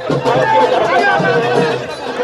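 Several voices talking and calling out over music, with crowd noise behind.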